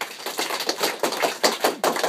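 A group of children applauding: many quick, overlapping hand claps, dense and steady.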